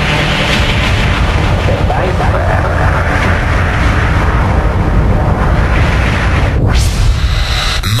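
Loud, dense rumbling explosion-style sound effect laid over electronic dance music, with a brief dip and a rising whoosh near the end.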